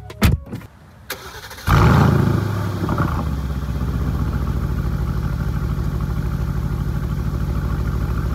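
A 2019 Aston Martin Vantage's twin-turbo V8 fires up about a couple of seconds in, with a brief loud flare, then settles into a steady idle with a fast, even pulse. A couple of clicks come just before it.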